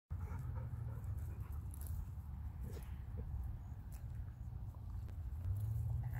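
A Belgian Malinois trotting and hopping at heel on grass, with faint panting and light footfalls, over a steady low rumble.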